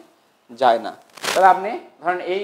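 Only speech: a man lecturing, two short spoken phrases with brief pauses between them.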